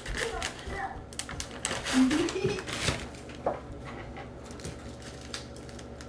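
Scattered light clicks and rattles of plastic candy packaging and a sprinkle tub being handled on a table, with a brief voice about two seconds in.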